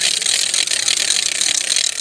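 Hand-swung wooden Easter ratchet rattles (řehtačky), at least two whirled at once, making a fast, continuous, loud clatter. In the Czech custom this rattling stands in for the church bells during Holy Week.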